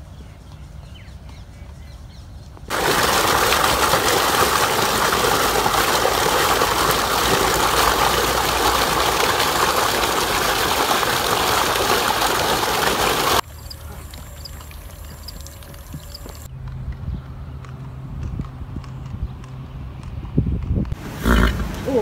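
Rushing water: a loud, steady noise of fast-flowing water that starts suddenly a few seconds in and cuts off after about ten seconds.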